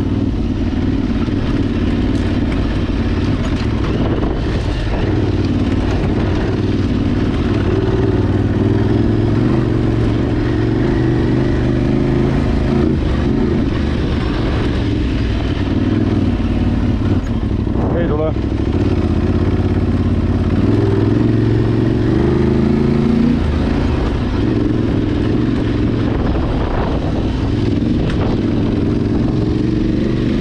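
Adventure motorcycle engine running steadily at low road speed under light throttle, its pitch rising and falling a little as the rider eases on and off.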